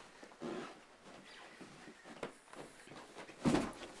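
Faint movement and handling noises with a short click about halfway through, then a brief laugh near the end.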